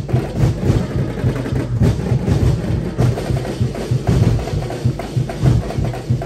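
A festival street-dance drum ensemble playing a fast, steady rhythm on drums and other percussion, with a heavy low beat.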